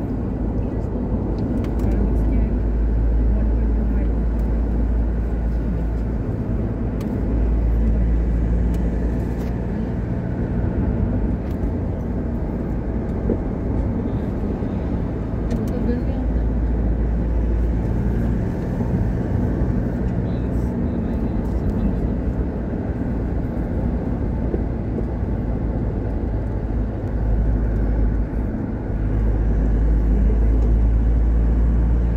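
Steady low road and engine noise of a moving car, heard from inside the cabin.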